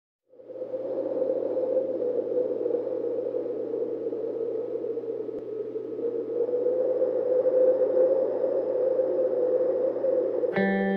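A steady ambient drone fades in within the first second and holds: a hissing, whooshing band of mid-low noise over a low hum, swelling slightly a little after the middle.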